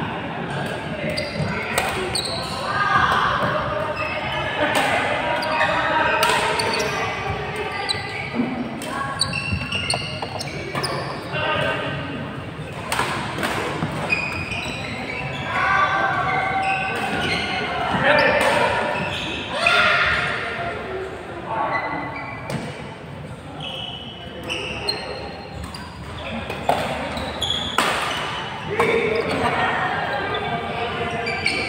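Badminton being played in a large indoor hall: sharp smacks of rackets hitting the shuttlecock every second or so, and short squeaks of court shoes, over a constant chatter of players' voices, all echoing in the hall.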